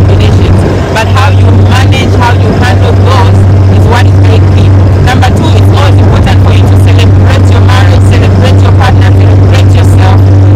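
Motorboat engine running at speed on open water, a loud steady drone.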